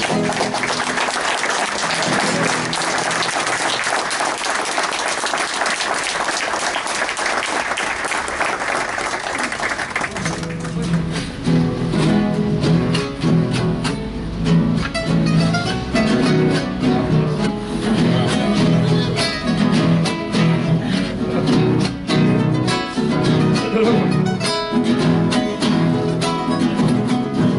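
A crowd applauding for about ten seconds, then several acoustic guitars strike up together, strumming the rhythmic introduction of a cueca.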